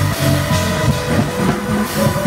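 Live gospel band music: a drum kit with cymbals played over sustained keyboard chords.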